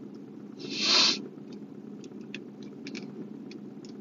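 A single short, breathy puff of air, like a blown-out breath, about a second in, over a steady low hum in a car cabin, with a few faint ticks afterwards.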